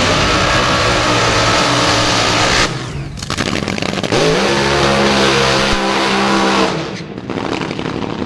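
Supercharged nitro-burning engines of front-engine AA/Fuel dragsters running at high revs. The first stretch ends abruptly at a cut about two and a half seconds in. About four seconds in, an engine revs up, rising in pitch, holds, then falls away near the end.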